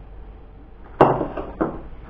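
A plate set down on a table: a sharp knock about halfway through, then a second, lighter knock.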